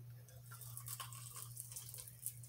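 A person chewing sweet potato fries, with faint irregular crunching and mouth sounds, over a low steady hum.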